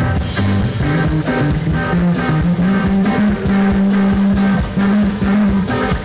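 Band music with guitar, bass and drums playing steadily.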